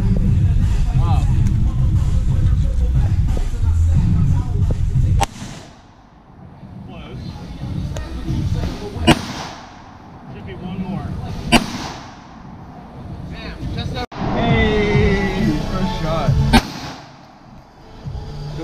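Semi-automatic pistol shots fired outdoors: three sharp reports a few seconds apart, with a smaller crack before them. A heavy low rumble fills the first five seconds and stops abruptly.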